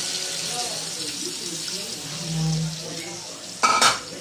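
Pork stock being poured from a bowl into a hot wok of pork pieces, splashing and sizzling steadily. A short, sharp knock comes near the end.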